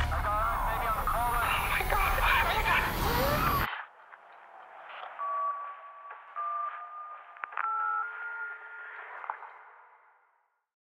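Distorted, garbled radio-like sound design full of warbling, swooping tones, loud until it cuts off abruptly a little under four seconds in. Then a thinner, tinny telephone-line sound holds a few steady tones that step up in pitch, fading out at the end.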